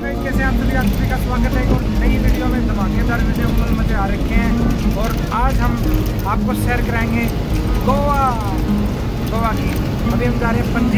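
Bus engine and road rumble heard from inside the moving bus, steady and low, under a man talking.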